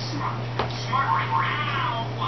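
An animal's high, wavering call, about a second long, starting about halfway in, pitched well above a man's voice.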